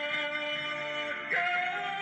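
A man singing a ballad into a microphone over backing music, holding a long note and then sliding up to a higher one a little past halfway.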